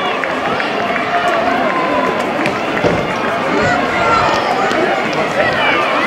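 A crowd of spectators lining a street, many voices talking and calling out over one another.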